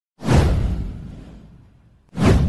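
A whoosh sound effect with a deep low rumble under it. It swells up sharply about a quarter second in and fades away over the next second and a half.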